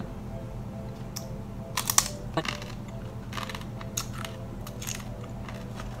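Crunching and chewing of a crisp cassava chip: a series of short, sharp crunches, the loudest about two seconds in, thinning out over the next few seconds.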